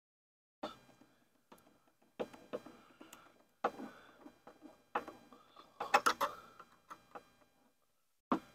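Dobinsons snorkel head being pushed and worked onto the top of the snorkel body: a series of irregular plastic knocks and clicks, the loudest cluster about six seconds in.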